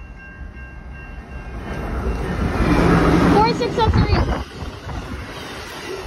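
Amtrak Hiawatha passenger train, a Siemens Charger diesel locomotive with three coaches, passing close by at speed. Its rumble and rail noise build to a peak about halfway through, then ease to a steadier rolling noise as the coaches go by.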